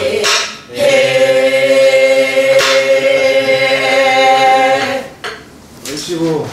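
A group of voices singing a Namdo (southern Korean) folk song in unison, holding one long steady note that ends about five seconds in, with two sharp strokes on a buk barrel drum.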